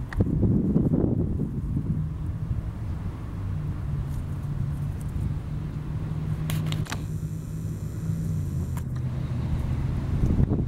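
A low, steady engine hum, like a motor vehicle running nearby, with low rumble in the first second or two.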